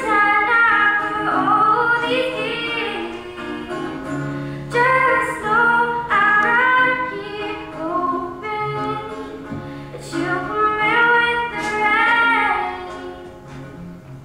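A girl singing a song while strumming and picking an acoustic guitar. The singing comes in phrases a few seconds long with short breaks, and stops near the end, leaving the guitar.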